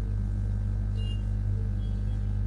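Steady low electrical-type hum at an even level, with a brief faint high tone about halfway through.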